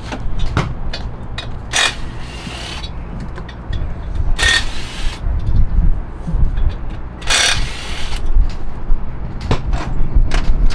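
Hand tools clicking and clanking on a car's clutch assembly as it is unbolted, with three short hisses: one brief, then two longer ones.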